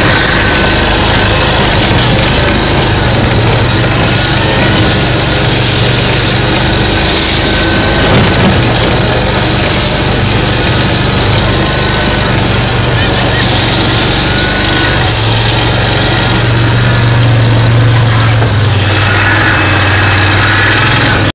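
EZGO vehicle's engine running steadily while it drives over snow, a continuous low drone under a steady rushing noise.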